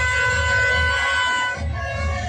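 Conch shell (shankh) blown in one long steady note that cuts off about a second and a half in, over a steady drumbeat.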